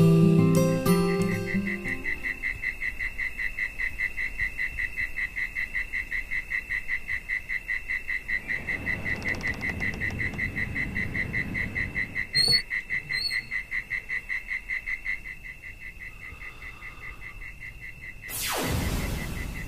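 Night-time crickets chirping in a steady, even rhythm, about four chirps a second, as a guitar tune fades out at the start. Two short high clicks come about two-thirds of the way through.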